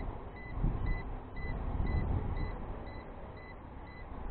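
A drone's radio remote controller beeping a steady run of short, high alert tones while the quadcopter comes down in return-to-home mode, over a low rumble.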